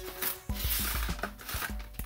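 Cardboard doll box being torn open by hand: rough ripping and rustling with a few sharp clicks, over steady background music.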